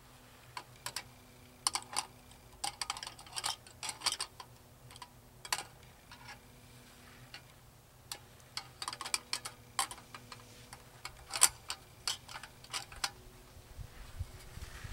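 Small metal camp stove and grill parts being handled and fitted together: irregular clusters of light clicks and clinks, the sharpest about three-quarters of the way through.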